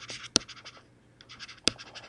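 Stylus writing on a tablet screen: light scratching strokes broken by two sharp taps of the pen tip, one early and one near the end.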